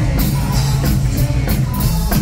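Rock band playing live: electric guitars over bass and a drum kit, with steady cymbal and drum hits.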